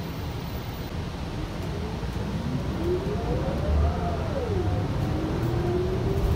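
Interior of a Gillig Low Floor Plus CNG transit bus under way: a low engine and road rumble with a drivetrain whine that rises in pitch as the bus accelerates, drops sharply about four and a half seconds in as the transmission shifts up, then climbs again.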